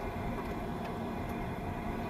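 Steady low road and engine noise inside the cabin of a moving car.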